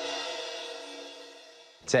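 Dramatic music sting: a ringing, cymbal-like metallic tone of several steady pitches that fades away over nearly two seconds.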